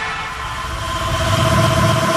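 Electronic sound effect closing a DJ mix: a wash of noise with a few held tones, swelling toward the end and then beginning to fade.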